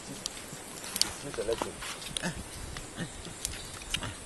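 Chimpanzees feeding on fruit: scattered sharp cracks and clicks, with a few short low grunts in the middle.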